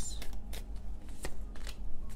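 Tarot deck being shuffled by hand: irregular soft card snaps and rustles, as cards are worked through to draw the next one.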